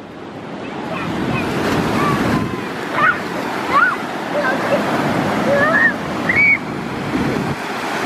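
Ocean surf breaking and washing up a sandy beach, its rush swelling over the first couple of seconds as a wave comes in and then staying loud and steady.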